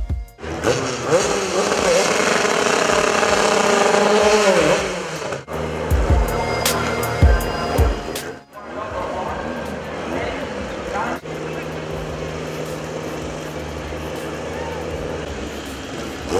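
A Honda four-cylinder race engine running and revving, with voices and background music mixed in.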